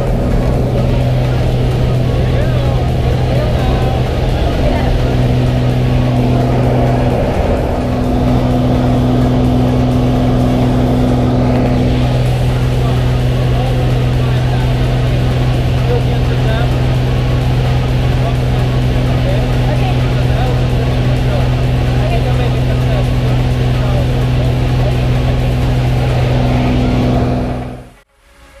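Single-engine high-wing jump plane's piston engine and propeller droning steadily, heard from inside the cabin during takeoff and climb. The drone cuts off suddenly at the very end.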